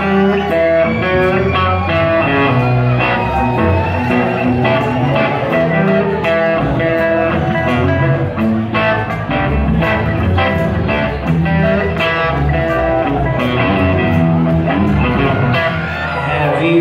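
Southern rock band playing live through a loud PA, an instrumental passage with no vocals: electric guitars with a lead line of bent notes over bass guitar and a steady drum beat.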